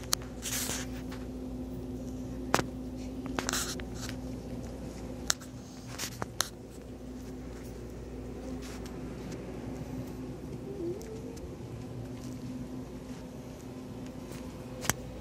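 Steady low electrical hum of a shop interior, with a few sharp clicks and two short rustling bursts from a hand-held phone being carried and handled while walking.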